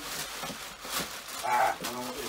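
Plastic mailing bag crinkling and rustling as it is handled and opened, with a short voiced hum or grunt about one and a half seconds in.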